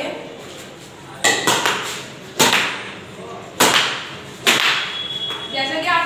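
Badminton racket strings, strung at 24 lb, striking a nylon shuttlecock four times about a second apart, each hit a sharp crack with a short ringing tail.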